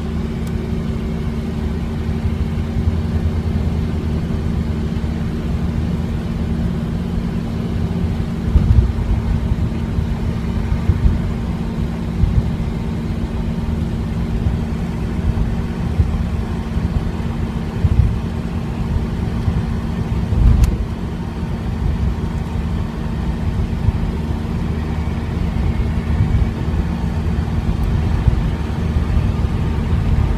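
FSO Polonez heard from inside its cabin while cruising: a steady engine drone with road noise, broken by a few short low thumps about a third and two-thirds of the way through.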